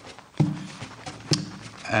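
A paint brush stippling against a wooden cabinet: two hollow knocks about a second apart, each with a short ring, the second sharper.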